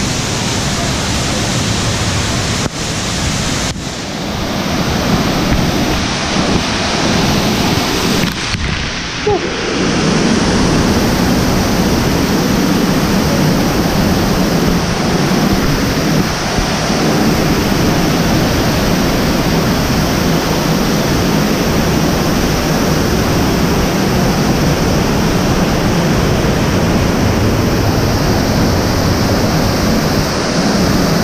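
Steady rushing of a large man-made waterfall pouring down artificial rock, growing louder about ten seconds in and then holding steady.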